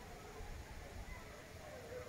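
Hunting dogs baying in the distance: faint, drawn-out cries that rise and fall in pitch over a low rumble.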